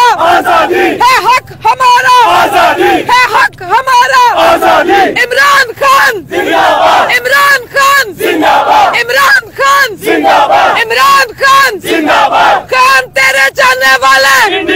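A woman shouting protest slogans in a loud, high voice, with a crowd of protesters chanting along. The phrases come in short repeated bursts, about one every second.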